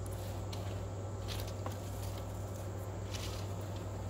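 Soft rustling and a few light clicks as damp wood chips are handled and tipped into a barbecue smoker's firebox, over a steady low hum.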